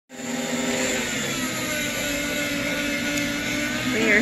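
Electric meat slicer's motor running with a steady hum, starting abruptly.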